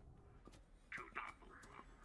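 Near silence, with a brief faint whisper about a second in.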